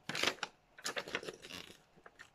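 Folded paper instruction leaflet being handled and refolded: a run of crisp paper rustles and crackles, the loudest right at the start.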